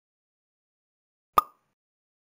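A single short pop sound effect about one and a half seconds in, sharp at the start with a brief pitched ring, marking a slide transition in the quiz; silence before it.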